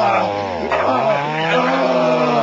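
A young man screaming and wailing in mock pain, his cries rising and falling in pitch, over a steady motor drone like a chainsaw's.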